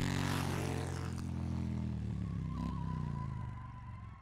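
Motorcycle engine sound effect: a rev that climbs as it begins, then runs on steadily at a slightly lower pitch. A thin high whine joins about halfway through, and the whole sound fades out near the end.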